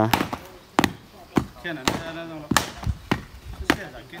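A flat wooden paddle slapping the face of a rammed-earth wall, about half a dozen irregular dull strikes. The wall is being beaten and patched smooth after its formwork has been taken off.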